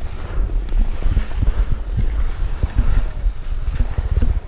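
Wind buffeting the microphone of a camera carried by a skier moving through moguls, under the hiss and scrape of skis on chopped-up snow, with irregular knocks from bumps and pole plants.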